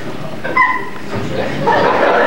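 A short, high-pitched yelp-like cry from a person, then audience laughter swelling near the end.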